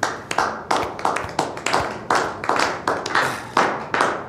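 A few people clapping their hands: a run of irregular claps, several a second.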